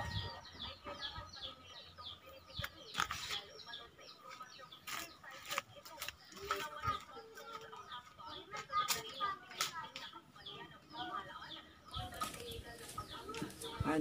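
Birds calling: short, high chirps that slide downward, repeated several times a second throughout, with a few sharp clicks in between.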